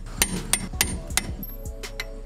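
Ratchet and socket clicking and clinking as steel lug nuts are run down a few turns onto wheel spacer studs, a sharp metallic click every quarter second or so.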